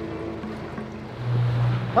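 Background music with held low notes, over a steady hiss of wind and water.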